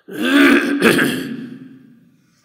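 A man clearing his throat loudly into the microphone, in two pushes lasting about a second and a half.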